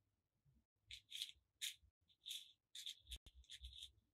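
Small plastic beads rattling faintly in a compartmented plastic bead box as fingers sift through them for the next letter bead, in several short bursts with a sharp click about three seconds in.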